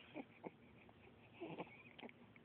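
An infant making three short, faint coos and squeaks.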